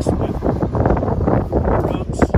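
Wind buffeting the microphone, a heavy steady rumble, with indistinct voice-like sounds over it.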